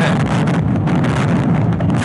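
Loud, steady roar of wind and road noise in a police car's dash-cam recording during a high-speed chase.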